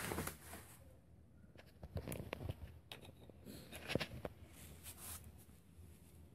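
Faint handling noises: a few light clicks and knocks, like plastic toy parts being set down and handled, over a soft rustle, most of them between about two and four seconds in.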